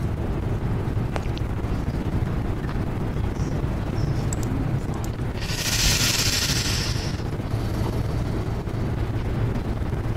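Steady low rumble of room and microphone noise in a hall, with a brief hiss lasting about a second and a half, starting about five and a half seconds in.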